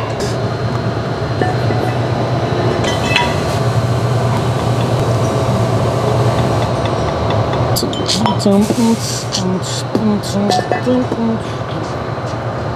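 Steady low machine hum with a few light clicks, and a voice or music over it from about eight seconds in.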